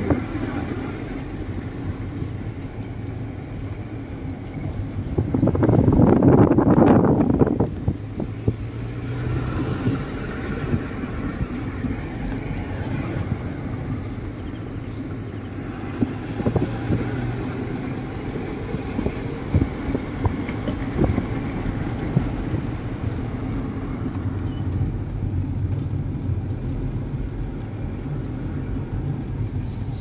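Steady road noise of a moving car heard from inside the cabin: a low engine and tyre rumble, swelling into a louder rush for a couple of seconds about six seconds in.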